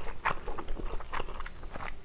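Close-miked chewing of soft, chewy tteokbokki rice cakes: a run of small, irregular wet clicks and smacks from the mouth.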